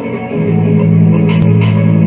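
Rock music with guitar and drums; a loud, heavy low guitar-and-bass part comes in about half a second in, with cymbal hits near the end.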